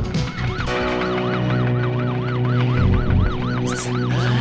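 Police siren yelping, its pitch rising and falling about four times a second, over a low held music drone.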